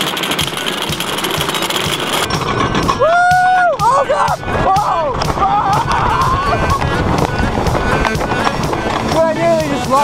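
Wooden roller coaster ride from a rider's seat: wind and track rumble. From about three seconds in, riders scream and yell, starting with one long held scream followed by wavering, sliding cries.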